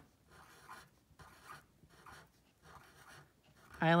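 Black Sharpie felt-tip marker drawing on paper in a series of faint, short strokes as it traces small circles.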